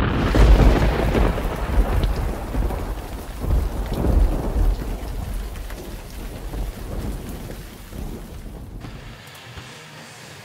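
Thunder rumbling over steady rain, a storm sound effect under a logo intro: loudest at the start, then slowly fading away until it is gone shortly before the end.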